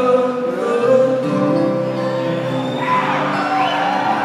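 Live acoustic string band (guitars, upright bass, cello) playing a slow song with long held notes, heard from the audience in a large hall.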